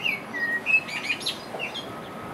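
A songbird chirping: a quick run of short, high whistled chirps and slurred notes, busiest in the first second and a half, with a couple more near the end.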